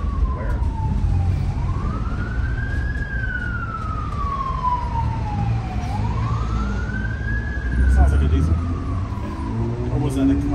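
An emergency vehicle's siren wails slowly, its pitch rising and falling about every four and a half seconds. It is heard from inside a moving bus over the low, steady running of its naturally aspirated Detroit Diesel 6-71 two-stroke inline-six.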